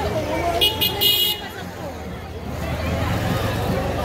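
Two short vehicle horn toots close together, about a second in, over the chatter of a street crowd.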